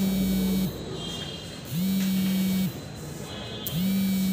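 A low electronic buzzing tone, about a second long, repeating every two seconds. Each tone slides briefly up in pitch as it starts and down as it stops.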